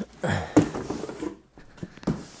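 Cardboard box being handled and its flaps opened: rustling and scraping of cardboard with a few light knocks and clicks.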